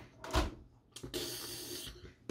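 Plastic toy packaging being handled on a table: a single knock about a third of a second in, then about a second of steady rustling.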